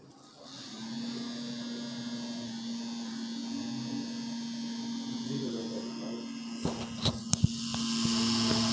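Small DC hobby motor spinning a propeller fan, starting about a second in and running with a steady hum, powered by a homemade six-cell carbon-carbon battery pack charged to about 9.3 volts. A few sharp clicks near the end.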